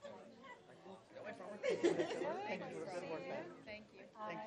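Indistinct chatter of several people talking over one another in a large room, swelling louder about halfway through.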